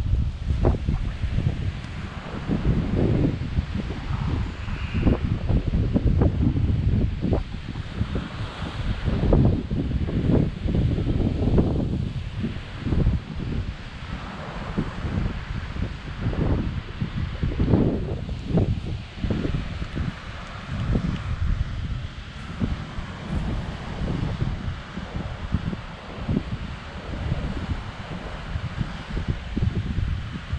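Wind buffeting the camera microphone in irregular gusts, a loud low rumble that surges and drops, strongest in the first half and easing after about twenty seconds.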